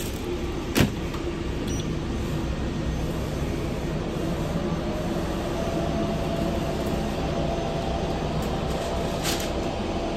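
Steady hum and whir of fast-food kitchen equipment and ventilation, with one sharp knock about a second in.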